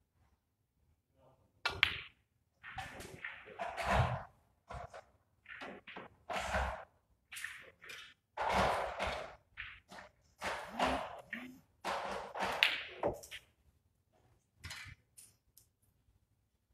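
Snooker balls struck and knocking on the table, within a run of loud, irregular bursts of noise, each under a second long, from about two seconds in to near the end.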